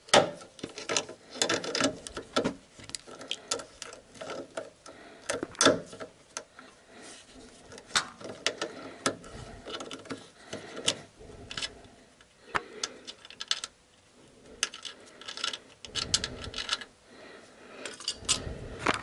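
Steel pliers clicking and scraping against metal in irregular sharp clicks while a snapped thread tap is worked out of a bolt hole.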